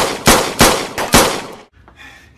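Dubbed-in gunshot sound effects: about four loud shots in just over a second, each with a short ringing tail.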